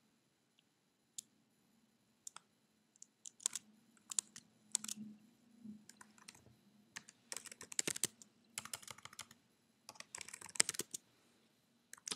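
Typing on a computer keyboard: a shell command keyed in with scattered single keystrokes at first, then quick clusters of clicks later on.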